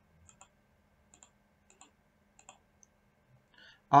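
Computer mouse clicking: four faint double clicks, each a press and release, spread over the first three seconds. Near the end a breath is followed by the start of a man's voice.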